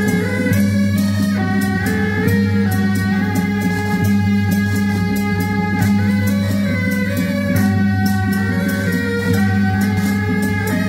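Beiguan processional music: a suona-like reed melody wavering over repeated cymbal and gong strikes, with a steady low hum beneath.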